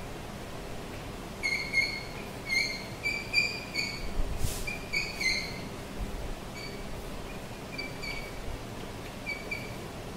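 Chalk squeaking on a blackboard as words are written: a run of short, high squeaks in quick succession. They come thickest in the first half and grow sparser and fainter after about six seconds.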